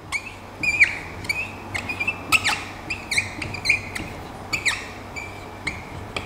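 Felt-tip marker squeaking on a whiteboard while writing: a run of a dozen or so short, high squeaks, each a stroke of the pen, with brief gaps between them.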